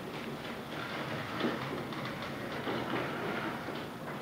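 Marker writing on a whiteboard, a run of short scratchy strokes over a steady classroom room hum.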